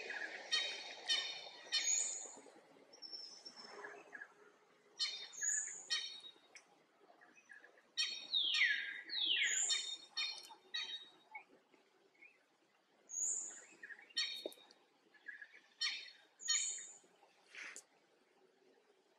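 Forest birds calling: runs of short repeated calls, high thin chirps, and two downward-sliding whistles about halfway through.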